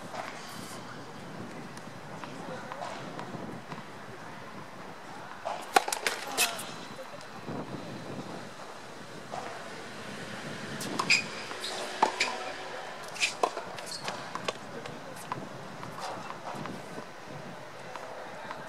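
Sharp pocks of a tennis ball struck by racquets and bouncing on a hard court, a short cluster about six seconds in and a run of them from about eleven to fourteen seconds, over faint background voices.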